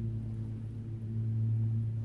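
A steady, unchanging low hum.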